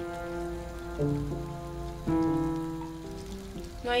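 Water boiling in a pot, a steady bubbling, under music of slow held notes whose chord changes about every second.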